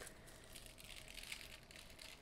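Faint crinkling of a thin gold metallic foil sheet as it is peeled back off freshly foiled cardstock.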